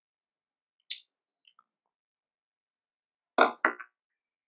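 A short sharp click about a second in, then a quick cluster of three louder clicks or knocks near the end.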